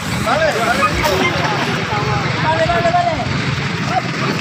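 Indistinct talk of several people at once, over a steady low rumble.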